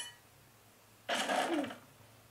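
A short, breathy burst of a person's voice about a second in, after a near-quiet pause with a faint low hum.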